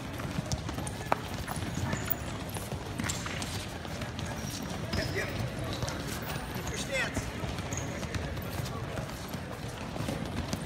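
Many wrestling shoes shuffling, stepping and squeaking on foam wrestling mats as pairs of wrestlers push and pull each other around. The patter is steady and continuous, with brief voices in a large gym.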